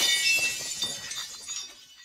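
Logo sound effect: a burst of shattering glass with tinkling, glittering fragments, loudest at the start and fading away over about two seconds.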